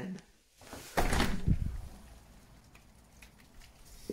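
A glazed door being opened about a second in: a short clatter of the handle and door, followed by a faint background hiss.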